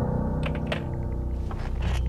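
Dramatic background score: a low sustained drone, with a few faint clicks over it.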